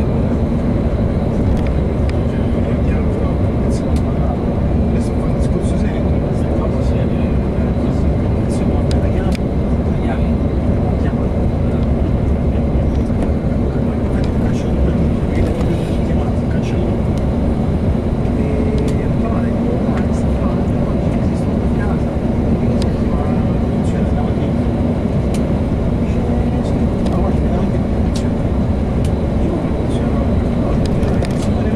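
Steady drone of a motor coach at motorway speed heard from inside the passenger cabin: engine hum with tyre and road noise, and scattered faint ticks and rattles.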